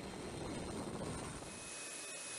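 Steady jet-engine noise of a taxiing C-5 Galaxy transport aircraft. About one and a half seconds in it changes abruptly to a quieter steady hiss carrying a thin high whine.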